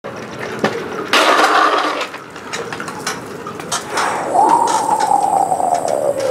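Hard plastic wheels of a drift trike rolling and scraping over concrete, loudest for about a second near the start, with scattered clicks. In the second half there is a long tone that falls slowly in pitch.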